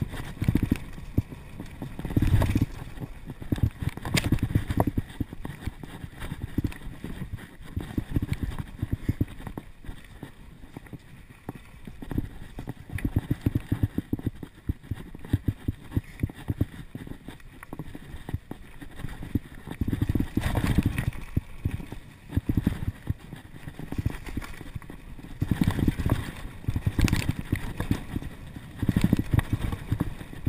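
Mountain bike ridden fast down a dirt singletrack: a jumble of rattles and knocks from the bike bouncing over the bumpy trail, with low rumble. It eases off a third of the way in and grows busier again in the last third.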